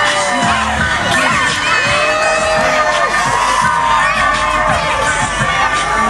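A large crowd of spectators cheering, screaming and shouting excitedly, many voices overlapping, over loud dance music with a pulsing bass beat.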